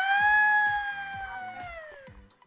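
A person's long, high-pitched drawn-out call, held for about two seconds, slowly falling in pitch and fading away, over background music with a steady beat.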